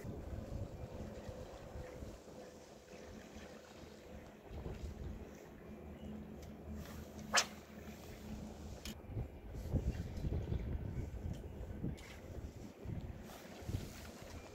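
Low steady rumble and hum of a fishing boat's engine, with some wind on the microphone. There is one sharp click about seven seconds in and a few faint ticks after it.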